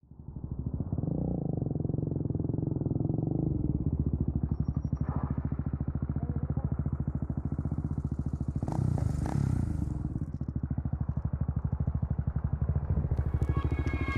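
Dirt-bike motorcycle engine idling with an even, rapid pulse, with a short burst of louder noise about nine seconds in. Music fades in near the end.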